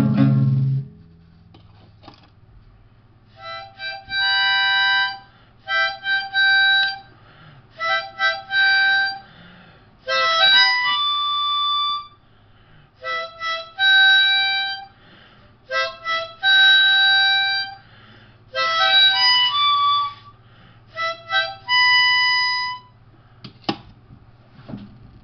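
An acoustic guitar strum dies away about a second in. Then an unaccompanied harmonica plays a slow solo in short phrases of held notes, with brief pauses between them. A single knock comes just before the end.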